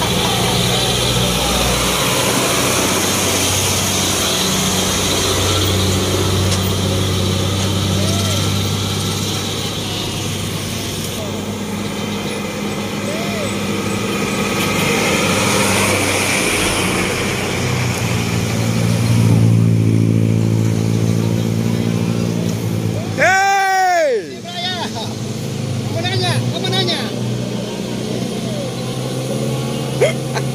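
Diesel engines of heavily loaded trucks, led by a Mitsubishi Fuso, running hard as they climb a grade and pass close by, with steady traffic noise. About three-quarters of the way through, a brief tone sweeps up and down in pitch.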